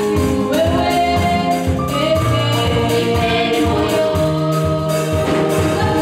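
A small group of girls singing a gospel song into microphones, holding long sung notes, backed by electric bass guitar and a steady percussion beat.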